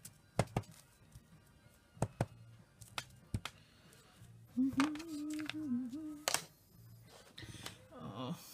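Wooden-mounted rubber stamps being tapped on an ink pad and pressed onto tissue paper, giving a string of sharp, separate taps. In the middle, a person's voice holds a wavering note for about a second and a half.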